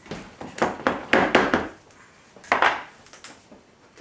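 Kitchen handling noises as food is worked into a glass baking dish: rustling with light knocks and clinks, in a longer spell at the start and a short one about two and a half seconds in.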